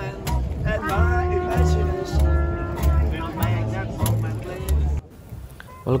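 A street band of trombone, trumpet, upright double bass, electric guitar and washboard playing an upbeat tune, with the plucked bass notes strongest. The music cuts off abruptly about five seconds in, leaving quieter background sound.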